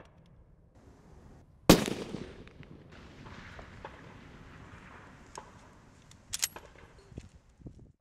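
A single shot from a bolt-action target rifle about two seconds in: a sharp crack with a tail that fades over about a second. A few sharp clicks follow near the end.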